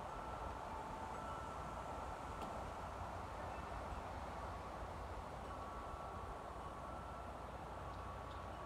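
Quiet outdoor background: a steady low rumble under a faint hiss, with faint thin steady tones that come and go.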